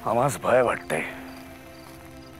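A short vocal utterance of two or three rising-and-falling syllables in the first second. Underneath are a soft, sustained background music drone and crickets chirping.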